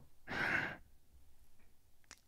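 A man's single breathy sigh or exhale, about half a second long, just after the start, then only faint low background.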